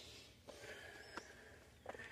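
Near silence: faint background with one brief faint click just past a second in.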